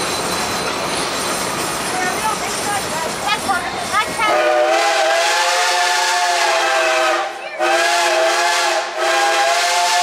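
Rolling noise of a narrow-gauge train running. About four seconds in, a 1940 ČKD 0-4-0T steam locomotive's whistle sounds a chord of several notes in three blasts: a long one, a short one, and another that runs on past the end.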